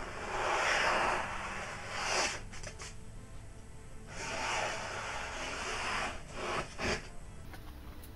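A freshly sharpened golok blade slicing through a hand-held sheet of paper: two longer cutting strokes, about a second in and again from about four to six seconds, with a shorter one in between and sharp paper crackles near the end. This is a paper-cut test of the newly sharpened and stropped edge.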